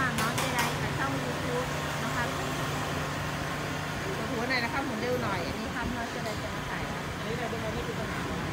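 Voices talking in the background over a steady low hum, with a few sharp clicks just after the start.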